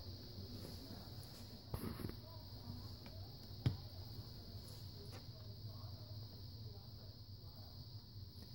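Faint handling sounds of test-lead clips being fitted to a small transformer's pins, with a sharp click at about 3.7 s as the tester's push-button is pressed to start the test. Under it runs a steady low hum and hiss.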